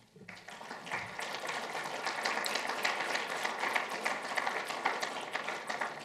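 Audience applauding, building up within the first second, holding steady, then tapering off near the end.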